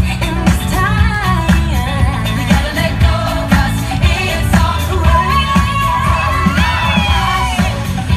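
Recorded pop song with a sung vocal over a heavy bass beat of about two beats a second, playing as dance music.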